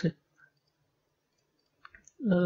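Computer mouse button clicks on the browser's find-next arrow: one faint click about half a second in and a quick pair near the end, with near silence between.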